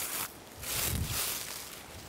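Footsteps on dry leaf litter: a short rustle, then a longer one of about a second starting about half a second in.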